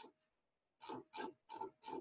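Computer mouse scroll wheel flicked repeatedly to scroll up through a long output, faint short ratcheting bursts about three a second starting about a second in.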